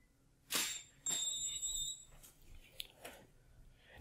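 A short burst of noise, then a high-pitched steady whine lasting just under a second, typical of a speedlight flash recharging after it fires, followed by a few faint clicks.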